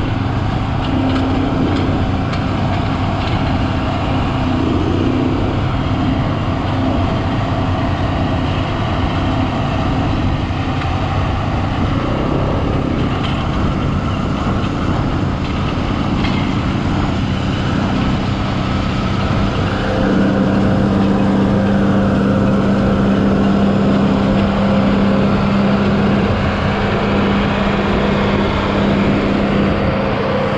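John Deere tractor's diesel engine running steadily under load as it pulls a Claas round baler through the hay. About two-thirds of the way through, a stronger, steadier engine note takes over.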